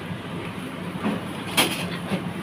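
Steady low hum of a running engine, with a short sharp noise about one and a half seconds in.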